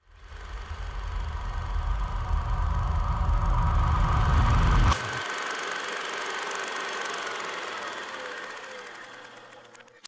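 Designed sound effect for a logo reveal. A low, rattling rumble swells for about five seconds and stops abruptly on a sharp hit, leaving a higher ringing tone that slowly fades out.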